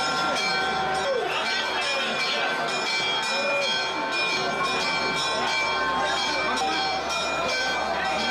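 Church bells ringing on and on, strike after strike with their tones hanging over one another, above the voices of a packed crowd.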